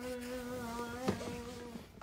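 A voice humming one long, steady note that sinks slightly in pitch and stops near the end, with a single click about a second in.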